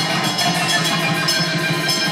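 Heavy metal band playing live: distorted guitar over fast drumming with rapid, even cymbal strikes, loud and steady, with little deep bass.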